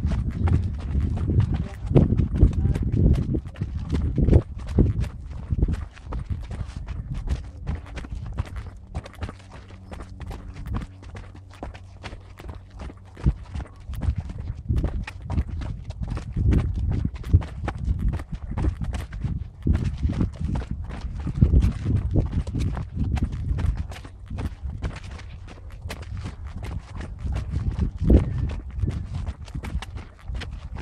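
Running footsteps coming down steep stair steps laid between old rail tracks: quick, irregular shoe impacts, several a second, over low rumble from the camera being carried at a run.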